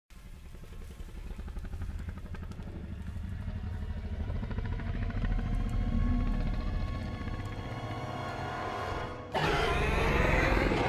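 Film sound design: a low rumble builds in loudness under tense music, then a dinosaur's roar breaks in suddenly and loudly about nine seconds in, from the film's Indominus rex.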